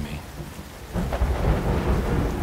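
Thunder rumbling over steady rain. The rumble eases in the first second, then swells again about a second in.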